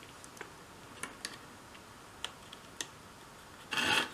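Small plastic spring clamps being handled and fitted onto a wooden piece: a few faint, scattered clicks, then a louder, brief clatter near the end as a clamp is set in place.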